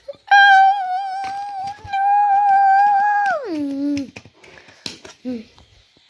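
A high-pitched voice holding one long, slightly wavering note for about three seconds, then sliding sharply down in pitch and dying away.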